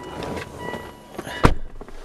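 Rustling handling noise, with one sharp knock about three quarters of the way through, the loudest sound.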